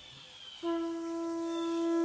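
A conch shell trumpet sounding one steady held note that begins about half a second in.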